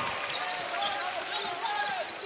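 A basketball being dribbled on a hardwood court, a few bounces over steady background crowd noise in the arena.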